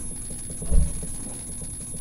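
Low steady rumble of room background noise, with one soft low thump a little before the middle.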